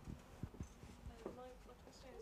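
Microphone handling noise: two soft low thumps about half a second in as the handheld mic is passed to an audience member, with a faint voice in the background.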